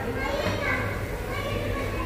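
Voices talking in the background over a steady low hum.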